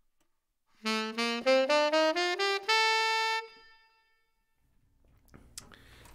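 Tenor saxophone playing the B Locrian mode as an ascending scale from B up to the B an octave higher, using the notes of C major. There are eight notes in quick steps starting about a second in, and the top note is held briefly before fading away.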